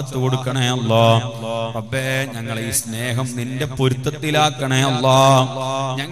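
A man's voice chanting in long, held, sing-song phrases through a microphone and loudspeakers, in the manner of a religious recitation within a sermon.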